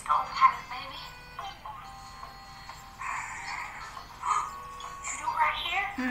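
Music and voices playing from a video on a tablet, with held musical tones under bursts of speech.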